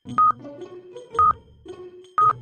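Stopwatch countdown sound effect: a short beep-like tick about once a second, twice here, over a light background music bed.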